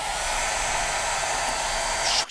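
Hair dryer blowing steadily close over a canvas, drying a fresh layer of acrylic paint.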